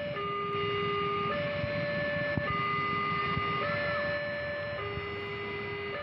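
Level-crossing warning siren sounding a steady two-tone high-low signal, the higher and lower tones alternating about every second, warning that a train is at the crossing.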